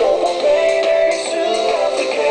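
Music from a remix track: a melody moving in held steps over a beat with short high percussion hits.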